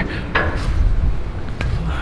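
Two short metallic knocks from the steel door of a shipping container as a hand handles it, about a second and a quarter apart, over a steady low rumble.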